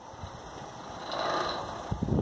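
Small wind turbine spinning freewheeling overhead: a soft whooshing whir that swells to a peak about a second and a half in and then fades. It spins unloaded because its output circuit is open.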